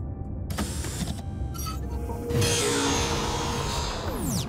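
Cartoon sci-fi sound effects for a probe's scan: a steady low rumble, then from about two seconds in a louder electronic hiss with a steady hum, over background music.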